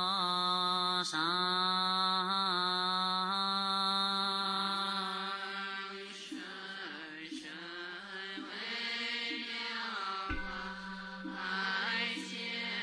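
Chinese Buddhist liturgical chanting sung slowly over a steady low drone. Long held, melismatic notes give way about halfway through to shorter syllables in an even rhythm.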